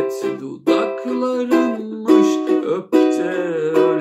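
Ukulele strummed in a steady chord rhythm, with a man's singing voice holding notes over it.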